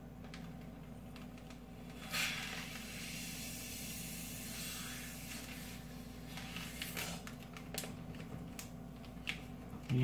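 Air being sucked by mouth through a drinking straw out of a Ziploc freezer bag to vacuum-pack a steak: a steady airy hiss from about two seconds in until about seven seconds. A few light clicks of the plastic bag follow near the end.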